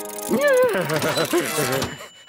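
A cartoon machine working with a fast mechanical clatter, under wordless voice sounds and background music. The voice sounds are the loudest part.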